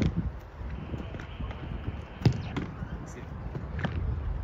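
Football strikes during goalkeeper drills: a few sharp thuds of the ball being kicked and caught in goalkeeper gloves, one right at the start, two a little after two seconds and one near the end, with voices in the background.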